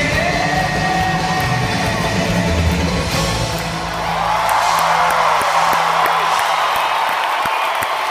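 Live band music in an arena, the song winding down with a held low note that dies away near the end. From about halfway, a large crowd cheers and screams over it.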